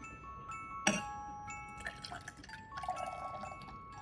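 Soft background music of chiming mallet notes, with a sharp click about a second in and water being poured into a drinking glass near the end.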